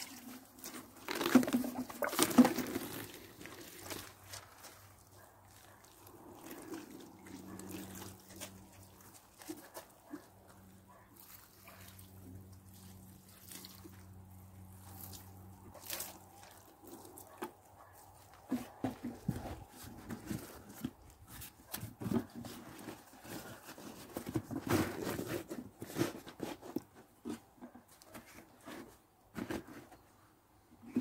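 Water poured from plastic watering cans onto a cardboard lining in a wooden pallet bed, loudest about one to three seconds in, with scattered knocks and clicks from handling the cans. A faint low steady hum runs through the middle.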